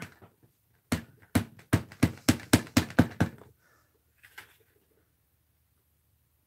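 A hand-carved rubber stamp tapped repeatedly on a black ink pad to ink it: about nine quick, sharp taps, roughly four a second, over two and a half seconds, then a faint scuff as it is set down.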